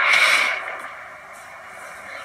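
A short breathy exhale, like a quiet laugh through the nose, that fades within about half a second and leaves a low steady hiss.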